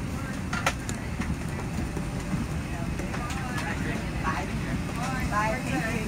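Steady low rumble of airliner cabin noise, with a couple of sharp clicks about a second in and people talking from about halfway through.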